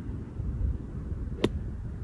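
A golf club striking the sand and ball in a bunker shot: a single short, sharp hit about one and a half seconds in, over a steady low rumble.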